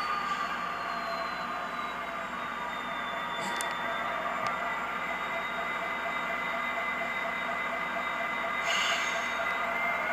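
HO-scale Athearn Genesis SD60E model's Tsunami 2 sound decoder playing diesel locomotive engine sound through its small speaker as the model rolls slowly, steady with a high whine that slowly falls in pitch. A brief hiss comes about nine seconds in.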